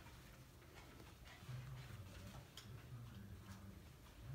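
Near silence: faint room tone with a low hum and a handful of faint, irregular ticks.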